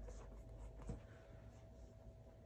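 Faint rubbing and scuffing as sneakers are handled and their insoles pulled out, with a light tap about a second in.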